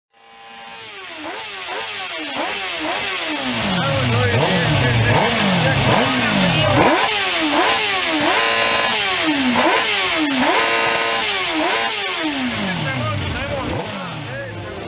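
Motorcycle engine revved over and over in quick throttle blips, its pitch rising and falling about twice a second, fading in at the start.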